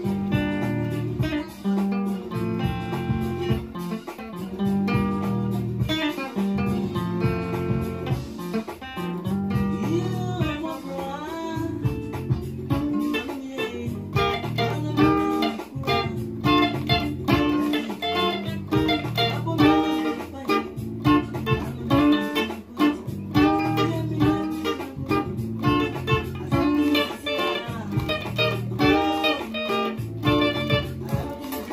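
Electric guitar playing highlife lead lines: a continuous run of picked single notes and short phrases over a steady low bass line, with a few sliding, bending notes about ten seconds in.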